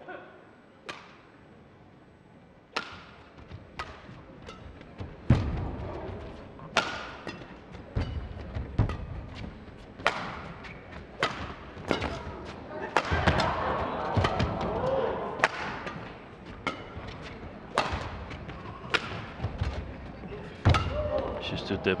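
Badminton rally: rackets strike the shuttlecock about once a second, each hit a sharp crack with footwork thuds on the court between them. Crowd noise swells in the middle of the rally.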